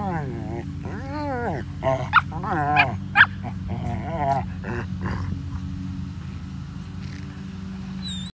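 Dogs playing rough, with a run of drawn-out, rising-and-falling whining howls and a couple of sharp higher yips in the first half. After that the calls thin out, leaving a steady low hum underneath.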